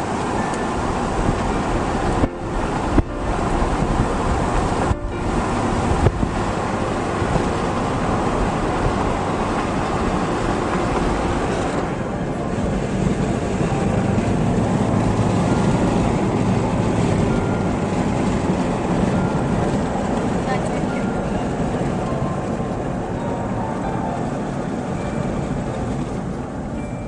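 Steady road and engine noise inside a moving car, with a few sharp knocks in the first six seconds.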